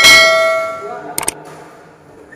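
Subscribe-button animation sound effect: a bright bell ding that rings out and fades over about a second, followed by a quick double click about a second later.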